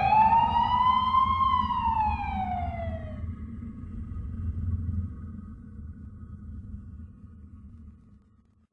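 Siren-like sound effect in a dancehall track's outro: one slow pitch sweep that rises for about a second and a half, then falls and stops about three seconds in. It plays over a low rumble that fades out toward the end, with a faint held tone lingering.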